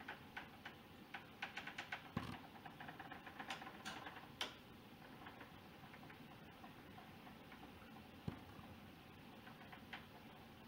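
Faint, irregular small clicks and ticks over a low hiss, coming thick and fast for the first few seconds, then only now and then, with a soft low knock about two seconds in and another near the end.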